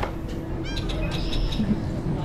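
Passenger ferry's engine running with a steady low rumble and hum as the boat comes alongside the pier. A few short, high bird chirps come about halfway through.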